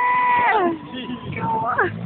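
Toyota Soarer drift car sliding sideways, its engine held high, then dropping sharply about half a second in, and rising and falling again near the end.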